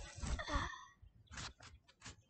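A girl's breathy sigh in the first half-second or so, followed by a couple of short scuffing noises.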